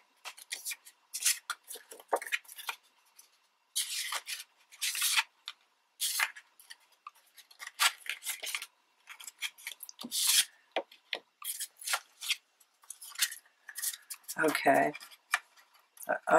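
Sheets of scrapbook paper being handled and folded over a plastic scoreboard: irregular rustles and crinkles.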